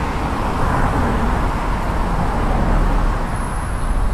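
Street traffic going by: a steady noise of tyres and engines that swells in the middle and eases off, with a faint high whine near the end.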